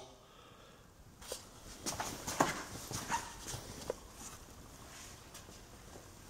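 Faint, scattered light clicks and knocks of handling, about a second in and thinning out after the fourth second, with no machine running.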